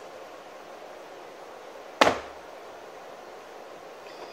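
A three-pound ball of wet clay slapped down once onto the potter's wheel bat, a single sharp thud about halfway through, over a low steady room hum.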